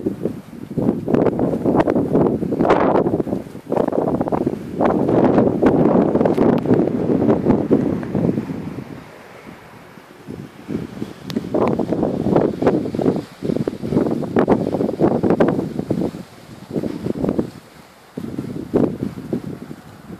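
Wind buffeting the microphone in uneven gusts, with a lull about halfway through.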